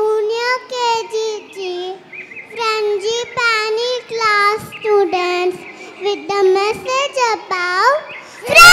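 A young child's voice over a stage microphone, going in short sing-song phrases that rise and fall in pitch.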